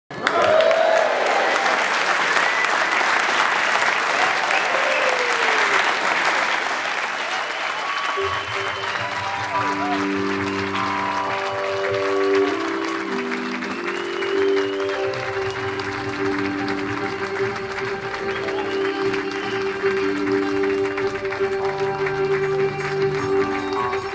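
Audience applauding and cheering, then about eight seconds in a jazz-fusion band comes in, keyboards playing held chords and stepwise notes over a steady low bass note.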